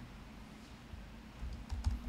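Typing on a laptop keyboard: quiet at first, then a quick run of keystrokes near the end, each click carrying a dull thud.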